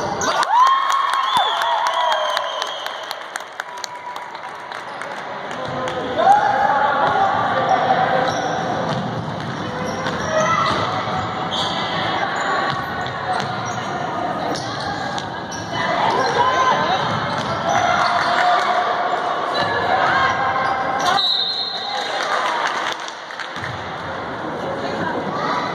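Indoor basketball play on a hardwood gym court: the ball bouncing and short, sharp sneaker squeaks several times, over the voices of spectators talking in the gym.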